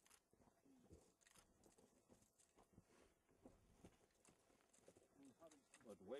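Near silence: faint, indistinct voices in the background with a few soft clicks.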